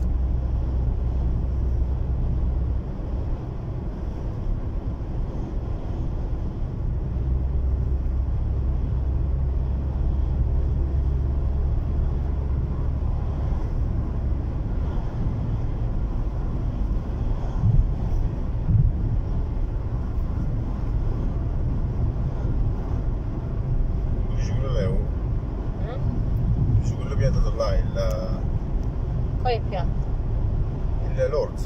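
Steady road and engine rumble inside a moving car's cabin, with a deep drone that swells and fades over the first dozen seconds. Faint voices come in near the end.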